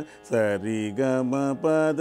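Carnatic swara singing (sa ri ga ma pa da ni syllables) in a practice exercise. After a short breath at the start comes a quick run of held notes that step down and up in pitch.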